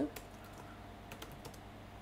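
Faint typing on a computer keyboard: a handful of separate keystrokes as a word is typed.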